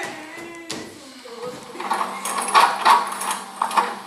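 A thump about a second in as a performer falls onto a wooden stage floor, followed by a person's voice in several loud, wavering bursts over a held low note.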